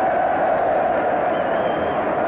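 Steady crowd noise from a packed rugby stadium, heard dull and muffled through an old broadcast recording.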